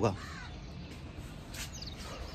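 A bird calling outdoors: one short arching call just after the start, then faint high chirps near the end, over a low steady background.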